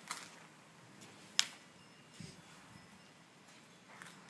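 A single sharp click about a second and a half in, with fainter rustling and a soft scuff before and after it, over quiet background.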